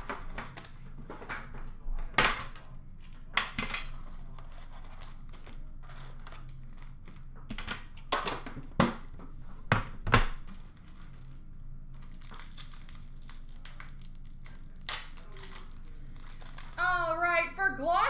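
Foil card-pack wrappers crinkling and tearing open, with several sharp knocks and clicks as metal card tins are handled on a counter.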